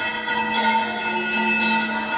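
Temple aarti bells ringing continuously: a steady metallic ringing made of several sustained tones.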